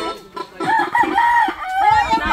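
A rooster crowing once, close by: one long crow starting about half a second in.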